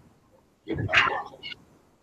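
One short, loud vocal burst about two-thirds of a second in, lasting about half a second, followed by a brief fainter sound.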